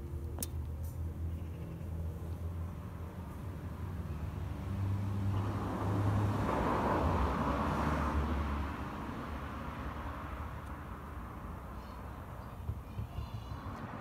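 Low engine hum of a motor vehicle in the background, with a slowly shifting pitch; it swells about five seconds in and fades again after about nine seconds.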